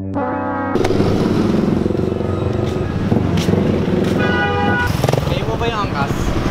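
Background music cuts off under a second in to a motorcycle ride through city traffic: steady engine and road noise. A vehicle horn sounds for under a second about four seconds in.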